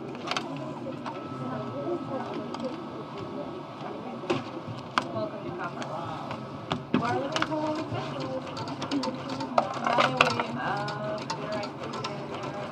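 Indistinct background talk in a casino studio, with scattered light clicks and taps.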